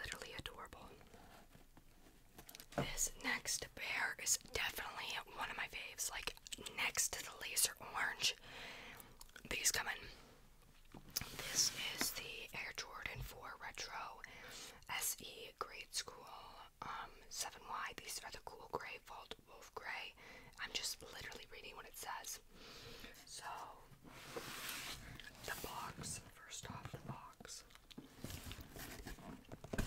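Close, soft whispering into a microphone, ASMR-style, with short pauses between phrases.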